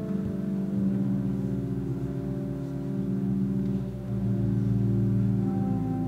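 Pipe organ playing slow sustained chords low in its range, the harmony shifting about a second in and again after about four seconds.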